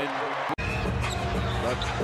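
Basketball broadcast sound: arena crowd noise and a ball being dribbled on the court. About half a second in there is an instant's dropout where two clips are spliced, and a commentator starts speaking near the end.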